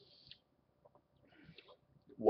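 Near silence: room tone with a few faint, brief clicks.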